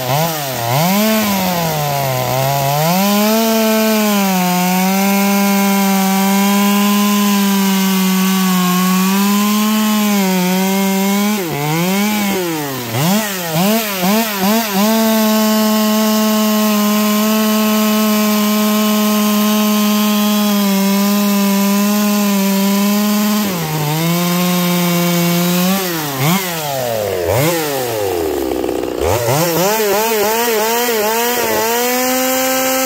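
Stihl MS 200T top-handle chainsaw's two-stroke engine making test cuts through a log to check its tune. The engine holds a steady high pitch under load through long cuts, with quick revs up and down between them. Near the end it drops toward idle before revving up again.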